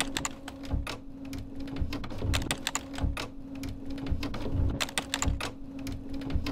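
Computer keyboard typing sound effect: rapid, irregular key clicks over a steady low hum.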